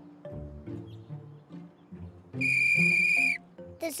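A toy trumpet blown once: a steady, high-pitched toot about a second long, starting a little past halfway, over soft background music.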